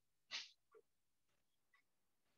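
Near silence, broken by a few faint, brief sounds, the clearest about a third of a second in and a weaker one just after.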